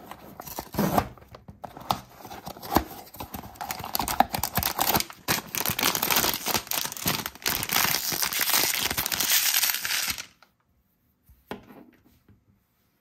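A cardboard blind box being handled, with a few sharp clicks and taps. Then a metallic foil pouch is torn open and crinkled, loud and crackly for about six seconds, stopping abruptly about ten seconds in. One small click follows near the end.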